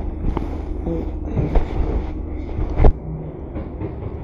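A few light knocks and clinks over a steady low hum. The loudest knock comes near three seconds in, after which the hum drops.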